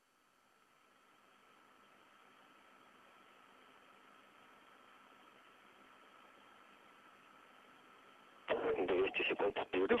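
Faint hiss of an open radio voice channel with a steady thin tone running through it, rising in just after the start. A man's voice comes over the channel about eight and a half seconds in.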